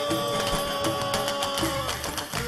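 Traditional Gulf Arab ensemble music with hand drums beating a steady rhythm under one long held melodic note, which dips and falls away near the end.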